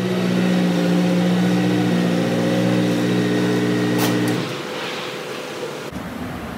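Steady hum of running shop machinery, several even tones held level, that cuts off suddenly about four and a half seconds in, just after a sharp click.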